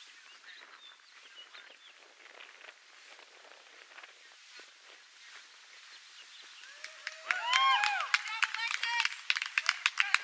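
Faint outdoor background at first, then about seven seconds in, several voices cheer with rising-and-falling calls and spectators clap, the clapping going on to the end.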